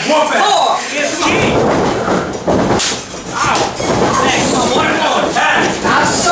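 Wrestlers' bodies and feet thudding on a wrestling ring, with a few sharp impacts, over shouting and chatter from a small crowd.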